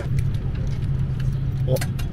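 Airliner cabin noise: a steady low drone from the aircraft, with a few faint clicks and one sharp click near the end.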